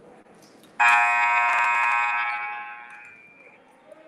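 Basketball scoreboard horn sounding once: a steady electronic buzz that starts suddenly about a second in, holds for about two seconds and then fades out.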